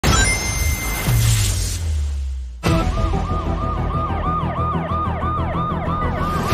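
A loud opening hit with a deep rumble that falls in pitch and fades, then, after a sudden cut about two and a half seconds in, a police car siren yelping in fast rising-and-falling sweeps, about three a second, over traffic noise.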